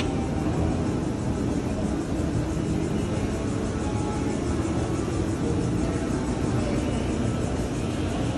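Steady low running noise of a moving escalator inside a busy mall, with faint background music over it.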